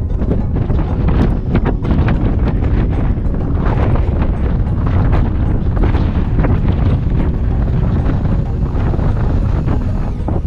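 Wind buffeting the camera's microphone: a loud, gusty low rumble that flutters unevenly.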